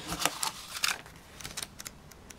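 Paper and cardboard being handled: a manual slid out of a cardboard box and its pages flipped open, a series of short rustles and light taps.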